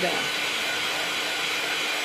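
Handheld craft heat gun running steadily, blowing hot air to dry the paint and glue on a decoupage piece.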